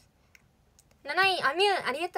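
After about a second of near-quiet with a couple of faint clicks, a young woman's voice comes in sing-song, its pitch rising and falling in arches.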